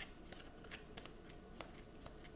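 A deck of tarot cards being shuffled by hand: a run of faint, irregular soft clicks.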